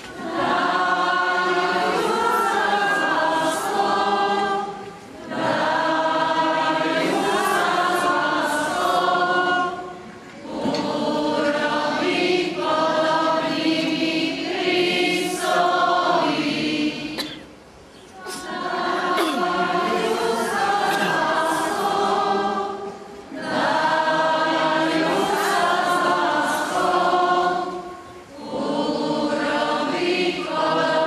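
Many voices singing a hymn together, in sung phrases of a few seconds each with short breathing pauses between them.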